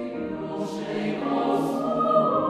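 Large mixed choir of men and women singing held chords of a Kazakh folk-song arrangement in Mandarin. The chord changes about halfway through, and twice the whole choir sings a crisp 's' consonant together, about a second apart.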